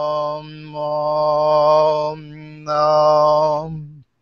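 Wordless healing chant: long held vocal notes in phrases of about a second, with short breaks between them, over a steady low drone that stops abruptly at the end.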